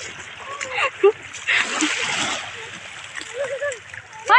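Shallow seawater splashing as people wade and children play in it, with scattered voices mixed in. The splashing is busiest around the middle.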